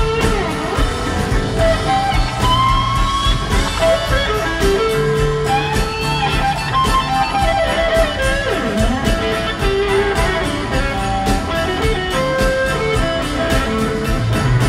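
Live blues-rock band with an electric guitar playing a lead solo: single held notes, several bent up and down in pitch, over steady drums and bass.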